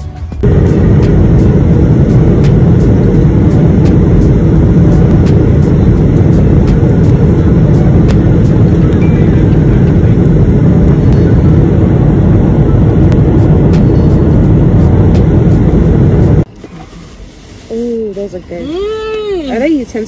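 Loud, steady rumble of a jet airliner's cabin, engine and airflow noise heard from a window seat. It cuts off suddenly near the end, and a few short vocal sounds follow.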